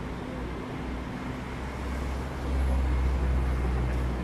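City traffic rumbling, a steady low hum that swells as a vehicle goes by about two and a half seconds in.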